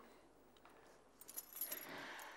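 Faint metallic jangling, like heavy chain jewellery shifting, in a short cluster of light ticks over the second half after a quiet first second.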